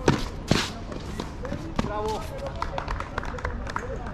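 Tennis racket hitting the ball on a hard court: a sharp pop just after the start, followed by a second knock about half a second later. After that come quieter footsteps on the court and a brief distant voice.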